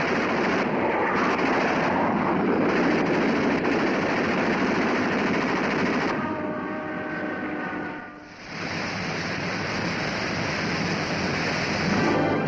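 Rocket engine roar, a loud crackling rush of noise that dips briefly about eight seconds in and then returns. A few held tones sound faintly beneath it around six seconds in.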